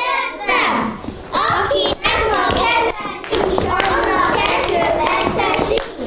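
Young children's voices chanting together on a stage, with a few sharp hand claps among them.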